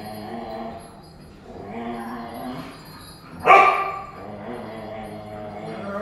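Dogs at play, whining and grumbling in short pitched bouts, with one sharp, loud bark about three and a half seconds in.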